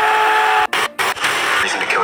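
A man screaming, one long held cry over a loud rushing noise, cut off abruptly about two-thirds of a second in. After two brief dropouts, a noisy rush carries on.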